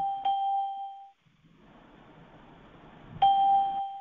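Bell-like chime ringing: a steady tone carries on from before and stops about a second in, then a second chime is struck about three seconds in and rings for under a second.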